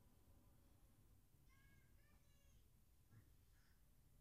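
Near silence: quiet room tone with a low hum, broken by a few faint, short high-pitched calls about halfway through and again near the end.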